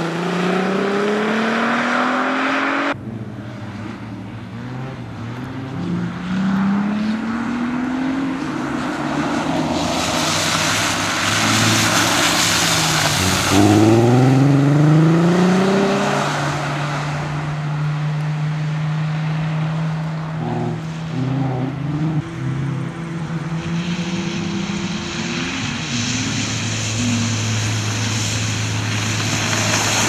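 Audi A3 quattro driven hard on a wet track: its engine note climbs again and again as it accelerates through the gears, with stretches of steady engine note between. There is a hiss of tyres on the wet surface, and sudden jumps where separate passes are cut together.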